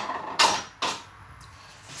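Eggs being cracked into a bowl of flour: three short crackling strokes about half a second apart, the first the loudest.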